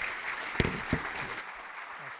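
Audience applauding steadily, with two sharp thumps about a third of a second apart near the middle.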